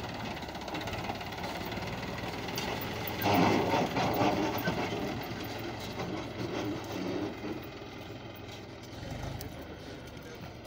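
Mahindra 265 DI tractor's three-cylinder diesel engine running under load as it pulls a seven-disc harrow through sandy soil, growing fainter as the tractor moves off. There is a brief louder rush about three to four seconds in.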